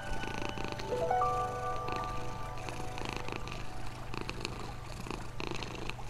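A domestic cat purring steadily, a low rhythmic rumble, under calm music with long held notes.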